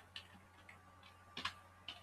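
Faint computer keyboard keystrokes: four or five separate key clicks, the loudest about one and a half seconds in.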